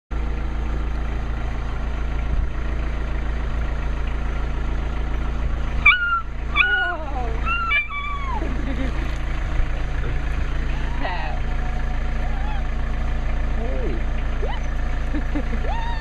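Weimaraner puppy giving three short, high yelping whines that fall in pitch about six to eight seconds in, with fainter whines later. A steady low rumble runs underneath throughout.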